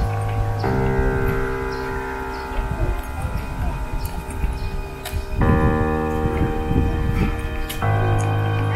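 Background music of sustained synth chords that change a few times, with light ticking over the top.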